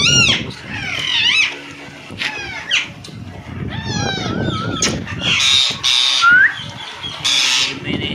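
A white male Indian ringneck parakeet calling: a run of short whistled chirps and sweeping, wavering whistles, with two harsh screeches in the second half.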